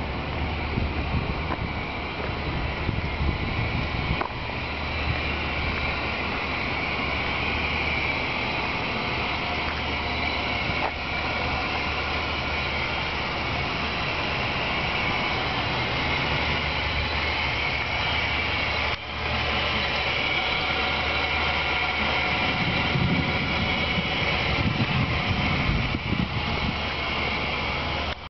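The 3800 V6 of a 1999 Buick Regal idling steadily, heard from outside the car. The sound dips out briefly about two-thirds of the way through.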